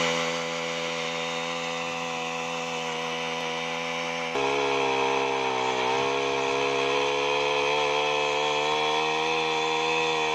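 Honda GX35 air-cooled four-stroke OHC engine on a trolley-mounted earth auger running at a steady speed. About four seconds in it gets louder and its pitch wavers briefly as the auger bores into the dry soil under load.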